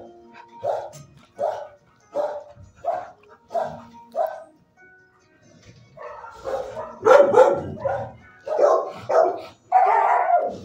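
Dogs barking in a shelter kennel: single barks spaced about three-quarters of a second apart, a brief lull about halfway through, then louder, overlapping barking from more than one dog.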